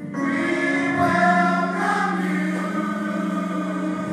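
Church choir singing a gospel song in long, held notes, a new phrase starting just after the beginning.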